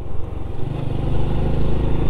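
Honda Biz 100 motorcycle's small single-cylinder four-stroke engine running under way, getting louder about half a second in and then holding steady, heard from the rider's seat.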